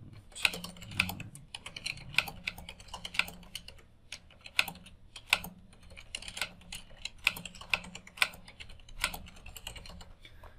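Typing on a computer keyboard: an irregular run of key clicks as a sentence is typed out.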